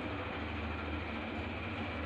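Steady low hum with an even hiss behind it, unchanging throughout, with no clinks or other distinct sounds.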